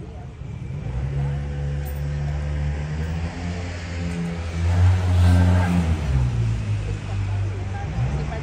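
A motor vehicle's engine going past on the street, a low drone that builds to its loudest about five seconds in, then drops in pitch as it moves away.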